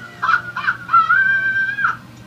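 A woman's high-pitched laughing cries from a film soundtrack: a few short bursts, then one long held high cry from about a second in that cuts off sharply just before the end.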